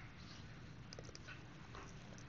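Near silence: faint room hiss with a few soft ticks of a stylus tapping and writing on a tablet screen.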